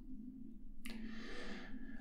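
Quiet room tone with a low steady hum; a little under a second in, a soft intake of breath begins and runs on until speech starts again.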